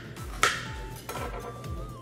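Background music with a steady beat, and a knife chopping through celery onto a cutting board, with one sharp chop about half a second in.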